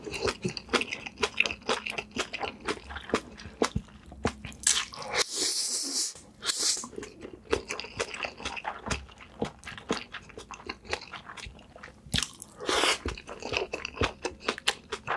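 Close-miked chewing of a mouthful of black bean noodles (jjapaghetti), full of wet mouth clicks and smacks. Twice, about five seconds in and near the end, come longer hissing slurps as noodles are drawn in.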